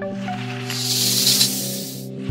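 A snake-hiss sound effect, about a second long, the loudest sound here, over background music with sustained low notes.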